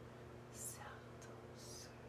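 A woman's soft whispered hissing sounds, twice: once about half a second in and again near the end.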